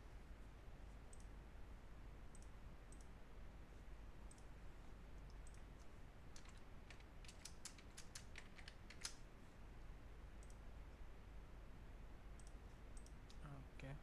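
Computer keyboard typing: a quick run of a dozen or so keystrokes between about six and nine seconds in, with scattered faint mouse clicks before it, over a low steady hum.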